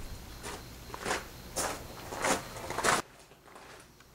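Footsteps on a gravel path, about five steps a little over half a second apart, getting louder as the walker comes closer; they cut off abruptly about three seconds in.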